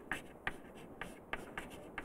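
Chalk writing on a chalkboard: about six short, sharp chalk strokes and taps spread over two seconds.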